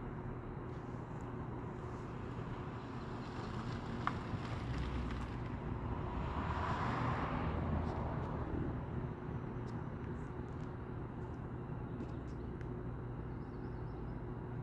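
A car passing, its sound swelling up about a third of the way in, peaking around the middle and fading away a couple of seconds later, over a steady low outdoor hum.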